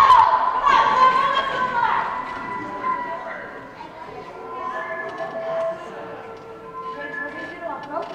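Children's voices, loud and overlapping, for about the first two seconds, fading as the group leaves. Then quieter music with long held notes that change every second or so.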